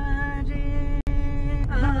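A woman singing a held, wavering folk-style melody over music, with a brief dropout in the sound about a second in.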